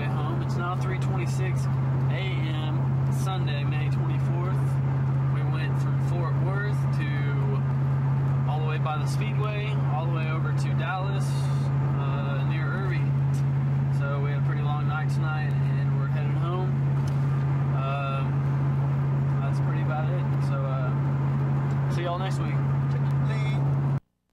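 A car's engine drones steadily, heard from inside the cabin, with indistinct talking over it.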